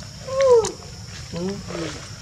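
A macaque gives a short, loud call that rises and then falls in pitch, followed about a second later by a brief low human voice.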